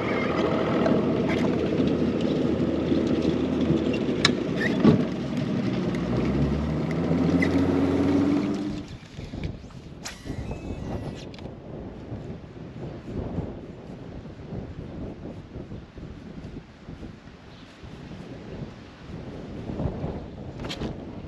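Bass boat's outboard motor running under way, rising in pitch just before it cuts off about nine seconds in. After that, quieter wind on the microphone and water around the idle boat.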